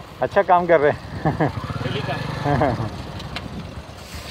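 A man speaking in short phrases, with a single-cylinder Hero Honda CD 100 motorcycle engine idling underneath as a steady low hum.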